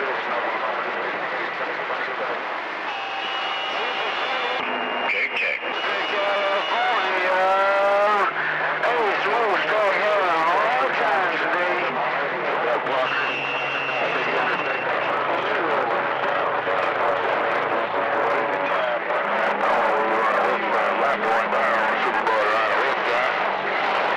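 CB radio receiver tuned to channel 28 picking up skip: a steady hiss of band noise with faint, garbled voices under it. Steady whistling tones from stations transmitting over one another come and go.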